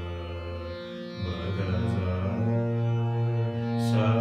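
Slow Hindustani alaap in raga Gaurimanjari: a man's voice holds long notes over a steady drone, stepping to a new note about a second in and again midway, with a bright plucked-string stroke near the end.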